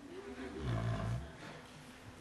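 Lecture audience laughing briefly in reaction to a joke, fading away about a second and a half in.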